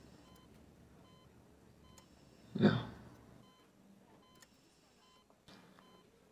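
Faint, short electronic beeps of a hospital patient monitor repeating over quiet room tone, with one brief, louder vocal sound, a sob or breath, about two and a half seconds in.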